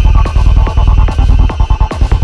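Psytrance music: a throbbing electronic bass runs unbroken for about a second and a half, then the regular pounding kick-drum pattern comes back near the end.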